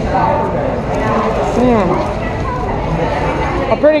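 Background voices talking in a busy restaurant, with someone chewing a crusty sandwich close to the microphone.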